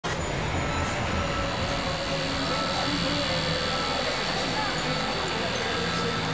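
Busy speedway-meet background: indistinct voices over a running engine, with a low rumble that drops away about five seconds in.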